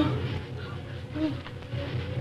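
A steady low buzzing hum on an old film soundtrack, with a faint short tone about a second in.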